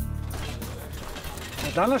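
Sound-effect ratcheting clatter over a low rumble, then a man starts speaking in Serbian near the end.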